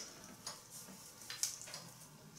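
Faint sounds of two people eating pizza: soft chewing and biting, with a few small clicks spread through the moment.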